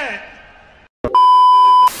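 An edited-in TV-glitch sound effect: a loud, steady 1 kHz test-tone beep lasting under a second, ending in a short burst of static.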